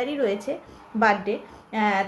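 Only speech: a woman talking in Bengali.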